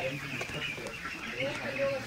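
A large flock of young chicks peeping continuously, many high chirps overlapping into a steady chorus.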